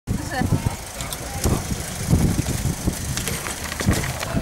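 Outdoor sound of a group of cyclists gathering with their bicycles: scattered voices over a low rumbling street background, with irregular knocks and clicks.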